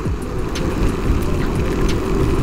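Yamaha NMAX scooter riding along a wet road in the rain: a steady low rush of wind on the microphone and tyre noise, with no clear engine note standing out.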